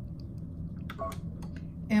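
Brother Luminaire embroidery machine lowering its needle at the press of the needle up/down button: a short beep with a couple of clicks about halfway through, then faint ticks.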